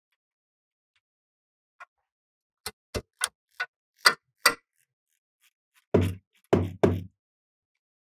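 Three-eighths-drive ratchet with a 13 mm socket loosening the centre pad-retaining bolt on a front brake caliper, breaking it free. Sharp ratchet clicks start about two seconds in, two or three a second, and three louder, heavier clicks come near the end.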